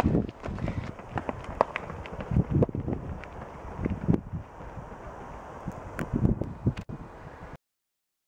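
Running footsteps on a tarmac road, an uneven run of thuds, with wind rustling on the microphone. The sound stops abruptly near the end.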